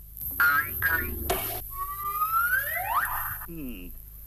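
Cartoon sound effects: a brief vocal yelp, then a sharp whack about a second in, followed by long rising slide-whistle-like glides and a short falling voice sound near the end.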